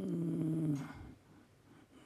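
A man's drawn-out hesitation 'euh' into a microphone, held for about a second, then a pause with only faint room tone.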